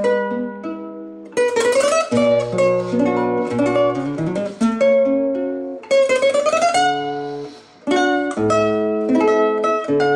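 Solo nylon-string classical guitar, fingerpicked: a melody of plucked notes over bass notes, with a couple of notes slid upward along the string, and a brief drop in loudness about three-quarters of the way through before the playing resumes.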